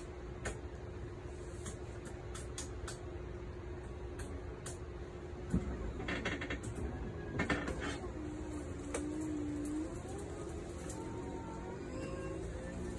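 Powered Murphy bed in a motorhome being raised at the press of a button: a few clicks and knocks, then a motor whine in the last few seconds as the bed starts tilting up.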